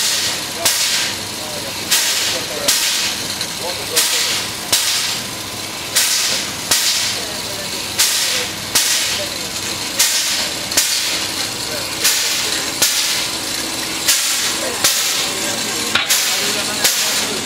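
Standing steam locomotive 109 109 puffing steam in a steady rhythm: a sharp hiss about once a second, each dying away before the next.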